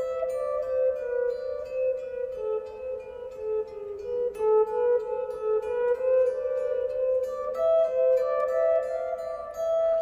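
Electric guitar played clean, a continuous line of even plucked eighth notes: a melodic sequence over changing bass notes, outlining A minor and E7 with G-sharp in the bass, one to five to one.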